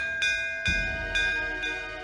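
A bell struck in an even rhythm about twice a second, each stroke ringing on, over a low hum.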